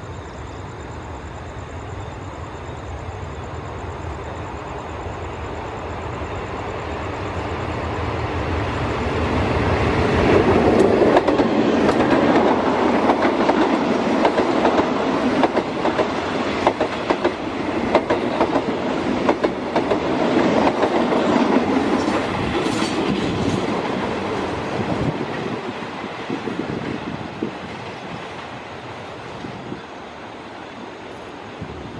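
Thai diesel-hauled passenger train approaching and passing close by: a low rumble builds, then the coaches' wheels clickety-clack over the rail joints, loudest from about a third of the way in until about two-thirds through, and the sound fades away as the train recedes near the end.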